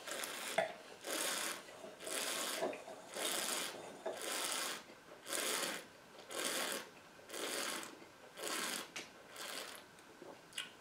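A person drawing air through a mouthful of red wine to aerate it on the palate: a series of about ten airy slurps, roughly one a second, with a sharp click just after the start.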